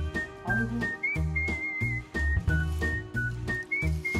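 Upbeat background music: a whistle-like melody stepping between notes over a bouncing, repeated bass line.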